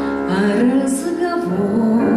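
A woman singing a slow song into a microphone over instrumental accompaniment, her voice coming in about a third of a second in.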